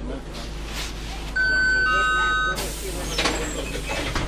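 Bus door warning signal: a steady electronic beep, joined about half a second later by a second, lower tone, the two held together for under a second, then cut off by a sharp burst of compressed-air hiss from the pneumatic door gear. Passenger chatter and the low rumble of the bus run underneath.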